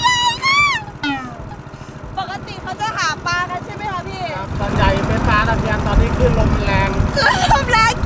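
A high voice singing in long, sweeping lines over the low running of a small fishing boat's engine. The engine rumble grows louder about halfway through.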